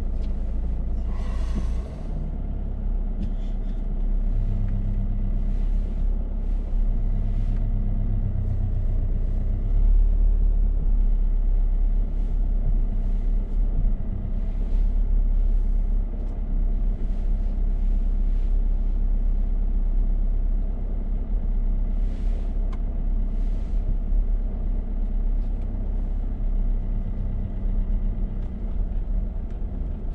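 Car engine running at low revs, heard from inside the cabin as a steady low rumble while the car reverses slowly along the kerb. There is a slight dip in level about two seconds in, then the rumble picks up again.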